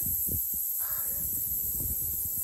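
A crow caws once, briefly, about a second in, over a low rumble.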